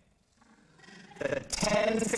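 A short near-silent pause, then a person's voice starts about a second in and grows louder.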